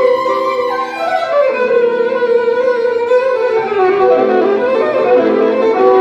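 Electric violin bowed in a melody, with notes sliding down in pitch between phrases.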